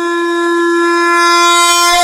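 A conch shell (shankh) blown in one long, steady note that grows brighter toward the end.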